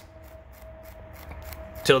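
Faint, steady scratchy rubbing of an abrasive stick scrubbed back and forth on the copper contact plate of a Suzuki Samurai ignition switch, polishing off old grease and corrosion. A faint steady hum sits behind it.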